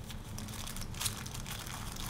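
Small plastic parts bag crinkling quietly in the hands, with a few soft scattered crackles.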